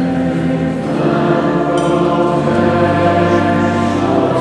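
Church choir singing a slow hymn in long, held notes.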